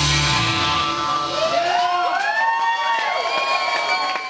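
Live rock band with electric guitars, bass and drums ending a song. The full band stops about two seconds in, leaving rising and falling sliding tones over the first cheers of the crowd.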